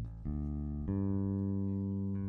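Sustained electric guitar notes ringing through an amplifier, steady and low, stepping to a new pitch twice, about a quarter second and about a second in, as the instrument is tuned between songs.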